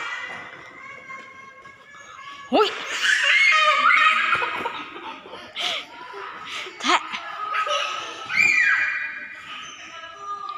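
Young children laughing and squealing excitedly, with sliding high-pitched shrieks that get loud about two and a half seconds in and come and go until the end.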